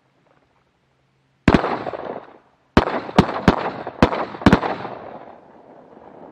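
Shotgun blasts during a duck hunt: a single shot, then about a second later five more in quick succession. Each shot trails off in a long echo.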